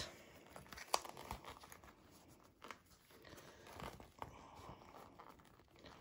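Faint rustling and crinkling of a red fabric bag lining being handled and smoothed by hand, with a few small sharp clicks.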